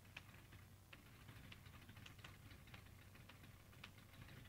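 Near silence broken by faint, irregular taps and clicks of chalk on a blackboard, roughly one every half second, as small marks are drawn.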